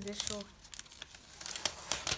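Thin plastic protective wrap crinkling and crackling as it is pulled and peeled off a new MacBook Pro laptop, in irregular sharp crackles with the crispest near the end.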